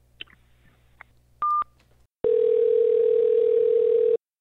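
Telephone line after a call is hung up: two faint clicks, a short high beep about a second and a half in, then a steady dial tone from about two seconds in.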